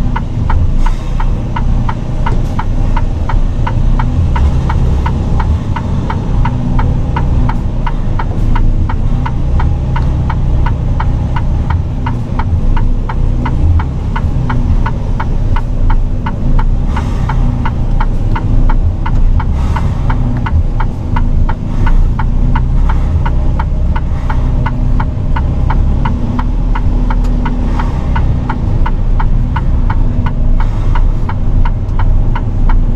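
Mercedes-Benz Actros SLT heavy-haul truck's diesel engine running at low speed, heard from inside the cab as a loud, steady low rumble. Over it is an even ticking, about two ticks a second.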